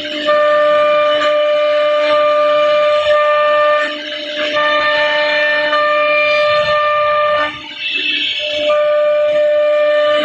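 CNC router spindle whining steadily at a high, even pitch as its bit cuts a pattern into a wooden board, the tone dropping out briefly about four seconds in and again near the eighth second with a short hiss.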